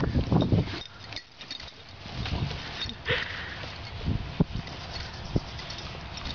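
Excited large dog jumping up on a person, snuffling and breathing hard against him, with a short high whine about three seconds in.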